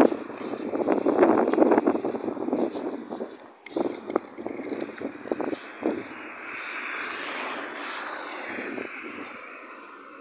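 Steady rushing engine noise from a passing vehicle, swelling in the second half and slowly fading near the end, after a stretch of louder, uneven gusty noise.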